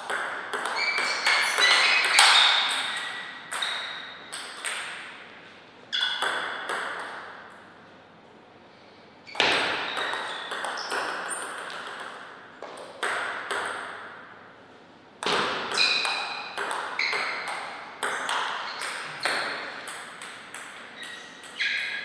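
Table tennis ball in play: sharp, ringing clicks of the plastic ball striking the rubber bats and the table, in bursts of quick exchanges a few seconds long with short pauses between points.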